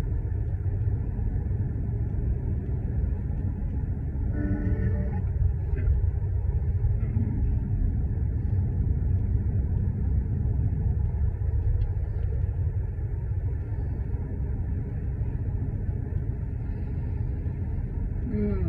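Steady low rumble of a car driving, heard from inside the cabin: road and engine noise. A brief pitched sound rings out about four and a half seconds in.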